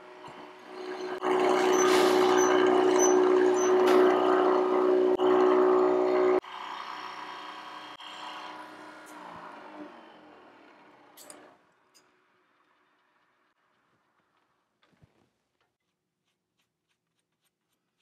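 Milling machine with a boring head making a final boring cut into purpleheart wood: a loud, steady cutting sound over the machine's hum starts about a second in and stops abruptly about five seconds later. The spindle then runs on more quietly and winds down, fading out around eleven seconds, and near silence follows.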